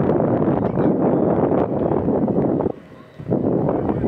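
Wind buffeting the microphone, a steady rush that drops out briefly about three seconds in.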